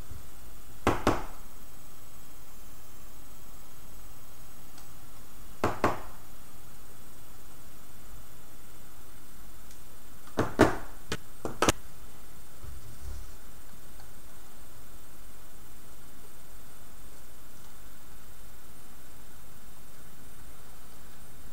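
A few sharp clicks and snaps from hands working stiff hookup wire and small tools at a robot's motor driver board. They come in pairs about a second in and near six seconds, then in a short cluster around ten to twelve seconds, over a steady background hiss.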